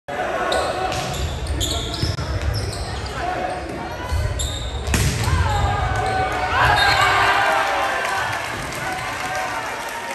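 Indoor volleyball rally: sneakers squeak on the gym floor and the ball is struck, with the loudest hit about five seconds in. Right after it, players and spectators shout and cheer as the point ends, and the voices fade toward the end.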